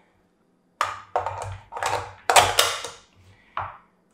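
Handling noise from a metal rifle magazine and rifle on a tabletop: about five sharp clacks and knocks in quick succession, then a fainter one near the end.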